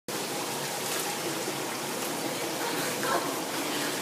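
Swimming-pool water splashing and sloshing around swimmers moving in it, a steady wash of noise, with faint voices in the background.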